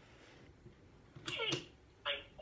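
A talking Olaf toy's small speaker gives a short, high voiced cry in two quick parts that slide down in pitch, about a second in, after a faint start.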